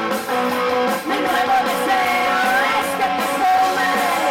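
Live rock band playing loudly, with amplified electric guitar and a female lead singer singing into the microphone.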